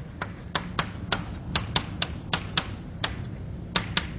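Chalk writing on a blackboard: a quick, irregular series of about a dozen sharp taps and clicks as the chalk strikes the board, with a brief pause just after three seconds in.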